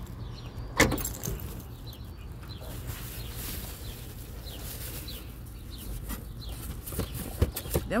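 A car's trunk latch releasing with one sharp click about a second in, then a few light knocks near the end as the trunk is loaded, over a steady low hum.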